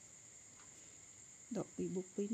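A steady high-pitched drone of insects, typical of crickets, over quiet room tone. A voice starts speaking near the end.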